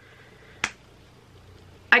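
A single sharp click, snap-like, about two-thirds of a second in, over faint room tone; a woman's voice begins right at the end.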